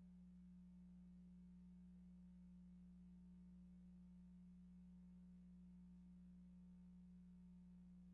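Near silence with a faint, steady low hum that holds one unchanging pitch.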